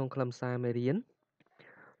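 A person speaking for about a second, then a short pause.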